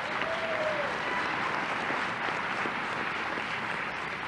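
Audience applauding steadily in a hall, heard on an old cassette recording with the top end dulled.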